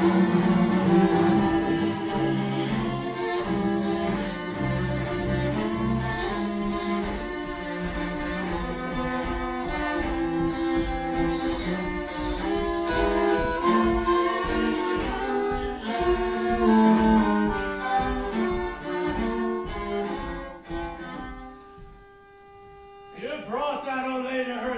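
Viola, cello and double bass bowed together in free improvisation, with dense overlapping lines. About three seconds before the end the playing thins to one held note, then sliding pitches come back in.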